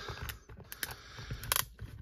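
Screwdriver prying apart the hard plastic halves of a BGS graded-card slab: a few small plastic clicks and snaps, the loudest about one and a half seconds in.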